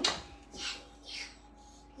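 A spoon knocks against a mixing bowl, then scrapes twice as soft biscuit-style cobbler topping dough is scooped and dropped onto strawberries in a ramekin.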